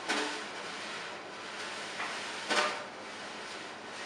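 Quiet room ambience with two short sounds, one right at the start and a louder one about two and a half seconds in.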